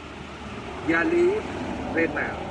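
A man speaking one short phrase about a second in, with a steady low rumble of road traffic behind.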